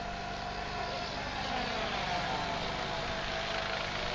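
Electric radio-controlled model helicopter flying overhead, its motor and rotor blades giving a steady whine that wavers slightly in pitch as the pilot works the throttle.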